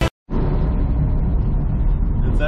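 Subaru BRZ with its FA20 flat-four engine driving on the road, heard from inside the cabin: a steady mix of engine and road noise, starting after a brief silent gap.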